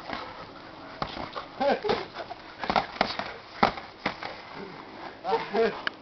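Several sharp smacks of boxing gloves landing punches, scattered through the middle and later part, among short bits of voice and laughter.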